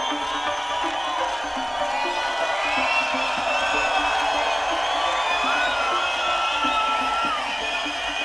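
Live music from a festival stage, with a large crowd cheering and whooping over it.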